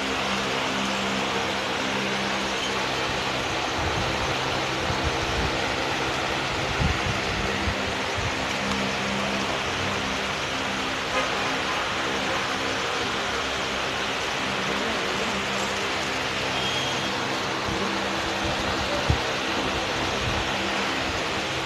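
Steady background noise: a continuous hiss with a low, even hum underneath, no clear events apart from a few faint knocks.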